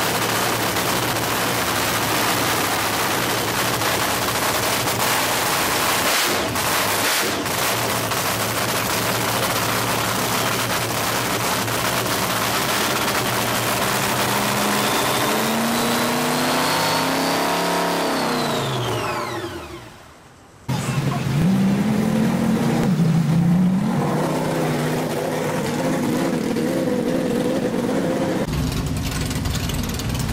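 Supercharged nitro-burning AA/FC funny car engine running during a pit warm-up. About halfway through its pitch climbs, then it winds down and shuts off about 20 seconds in, the whine falling away. Right after, a different engine runs steadily.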